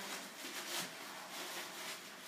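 Soft rustling and rubbing of plastic packing wrap being handled, in irregular crinkles that swell briefly near the middle.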